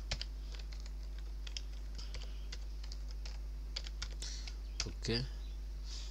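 Computer keyboard typing: irregular, scattered key clicks as a web address is typed, over a steady low hum.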